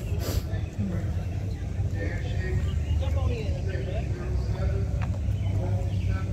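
Indistinct voices of people talking some way off, over a steady low rumble.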